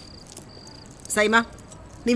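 Faint steady high chirring of crickets, with one short spoken word about a second in.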